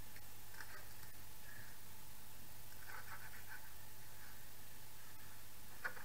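A knife chopping iceberg lettuce on a plastic cutting board: faint, scattered crisp cuts and taps, with a sharper tap near the end.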